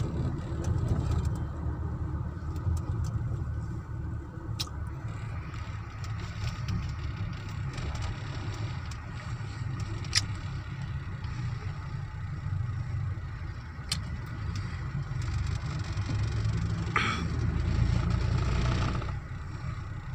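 Engine and road rumble heard from inside a moving car's cabin, low and steady, with a few faint clicks.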